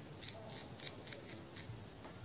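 Fingers with long nails rubbing and tugging hair at the scalp, giving a run of short, crisp crackles, about six in under two seconds.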